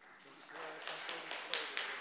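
About six irregular taps and knocks over a second and a half, under faint voices.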